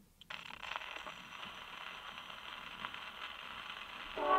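Steel needle of an acoustic Grafonola phonograph set down on a spinning 78 rpm shellac record about a third of a second in, then steady surface hiss and crackle from the lead-in groove before the music starts.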